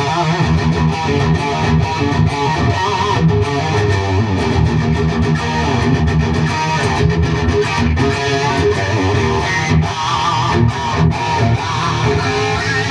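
Single-cutaway electric guitar with low-output Iron Gear Blues Engine pickups, played through an amp with the gain turned full up: overdriven lead playing of picked notes, with held notes shaken by vibrato about three seconds in and again near the end.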